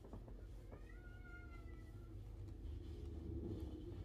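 A single drawn-out, high-pitched call, lasting about a second and a half and falling slightly in pitch, starting a little under a second in. It is faint, over a low steady hum.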